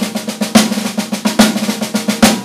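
Drum kit played with sticks: rapid snare-drum strokes with loud accents a little under a second apart, a drag paradiddle figure.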